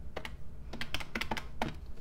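Plastic keys of a desktop calculator being pressed one after another, a quick run of about eight to ten clicks as a number is keyed in for adding.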